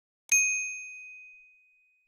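A notification-bell ding sound effect: one clear, high chime struck about a third of a second in and ringing away over about a second and a half.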